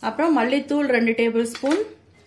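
A woman speaking, with a few light clinks of small bowls against a steel plate under her voice.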